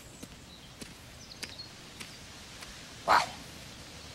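Quiet outdoor background with a few faint high chirps and ticks, then one short breathy exclamation, 'wow', about three seconds in.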